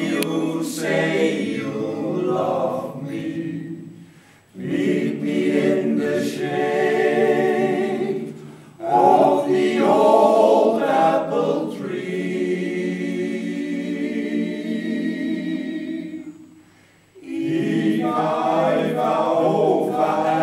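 Men's choir singing a cappella, in sung phrases broken by short pauses about four seconds in and again near the end.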